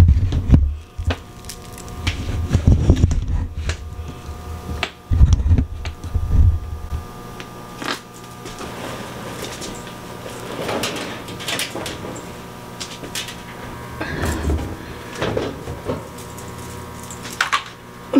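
Laundry being switched between front-loading washer and dryer: clothes rustling and dragging out of the drum, with knocks and bumps from the machine doors. Heavy low thumps come in the first several seconds, and a faint steady hum runs underneath.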